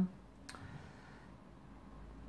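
Quiet room tone with a single faint click about half a second in.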